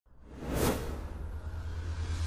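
Sports-broadcast intro sound effect: a whoosh that swells about half a second in, over a steady low rumble.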